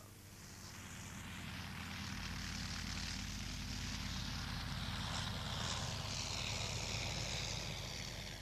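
A propeller aircraft engine running steadily. It swells up from quiet over the first couple of seconds, then holds level.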